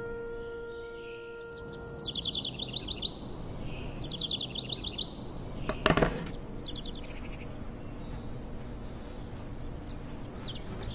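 Soft sustained music fades out, then small birds twitter in three short bursts of rapid, high repeated notes over a steady background hiss. A single brief loud noise comes about six seconds in.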